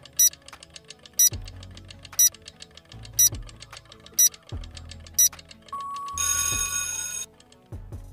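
Quiz countdown-timer sound effect: clock-like ticking with a stronger tick about once a second over a low pulsing beat. Near the end a short beep sounds and then about a second of alarm-bell ringing as the time runs out.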